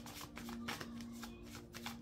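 A deck of cards being shuffled by hand: a quick, irregular run of soft card flicks and snaps.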